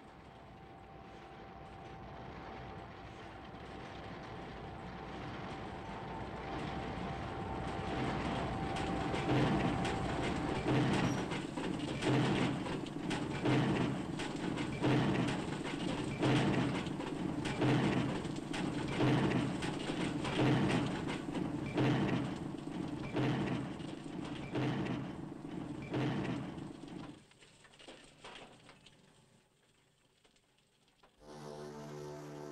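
A rhythmic industrial soundtrack. Rumbling noise with a faint steady tone builds for several seconds, then a heavy, regular pounding starts, about one stroke every second and a bit, and stops abruptly shortly before the end.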